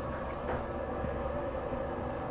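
Steady low background hum and rumble with a faint tick about half a second in.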